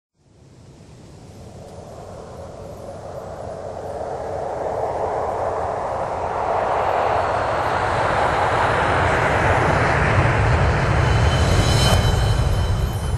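Sound-design whoosh for an animated intro: a rushing swell like wind that builds steadily louder, with a low rumble growing under it in the second half.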